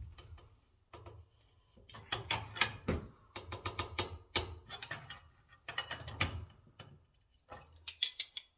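A steel wrench working a brass pump union nut tight, in runs of quick metallic clicks and scrapes as the jaws grip, turn and are reset on the fitting.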